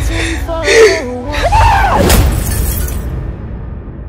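Dramatic trailer music with a deep low rumble and a wailing voice, cut by a crash like shattering glass about two seconds in, then fading out.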